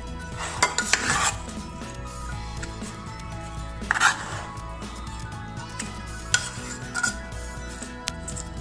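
Raw chicken pieces being stirred with their seasonings in a nonstick pot, a utensil clinking and scraping against the pot in irregular strokes, the loudest about a second in and again at about four seconds.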